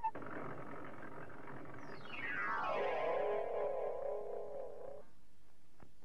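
Synthesized cartoon sound effect for a spinning top: a hissing rush, then a whistle gliding steeply down into a wobbling, warbling hum that cuts off about five seconds in.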